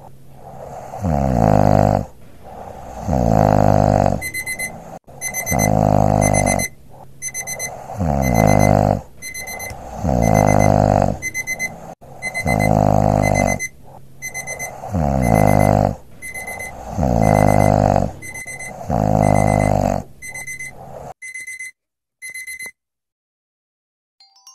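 Cartoon snoring sound effect, one loud snore with falling pitch about every two seconds. From about four seconds in, an alarm clock beeps in quick short groups between the snores; both stop shortly before the end.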